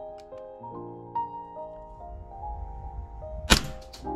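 Background music with steady sustained tones, broken about three and a half seconds in by a single sharp crack: a Tokyo Marui Hi-Capa gas blowback airsoft pistol firing one shot through a chronograph.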